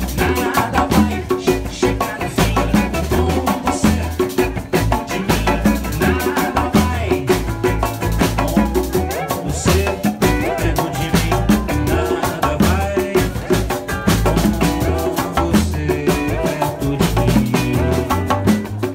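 Live band playing a bossa nova / sambalanço groove on acoustic guitar, drum kit and double bass, with a busy, even drum rhythm throughout.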